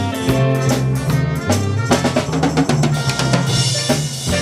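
A small live jazz band plays a swing tune: a drum kit keeps a steady beat under a walking bass line and brass horns, with a cymbal crash near the end.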